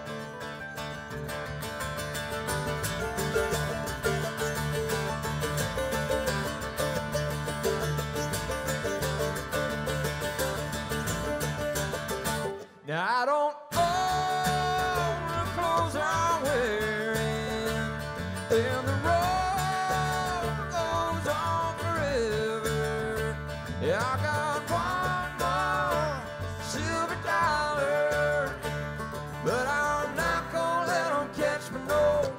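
Bluegrass band playing live on banjo, mandolin, acoustic guitar and upright bass. The music stops abruptly for about a second about halfway through, then comes back with singing over the picking.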